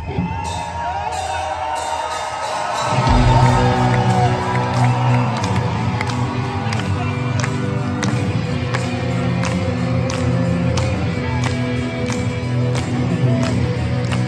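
Arena crowd cheering and whooping, then about three seconds in a live rock band comes in loud with guitars, bass and drums. The audience claps in time along with the beat, about two claps a second.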